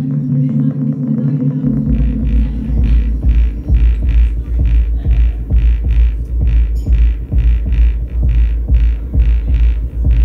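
Live electronic dance music played on synthesizers: a held synth chord, then about two seconds in a heavy pulsing bass beat with regular high percussive ticks comes in.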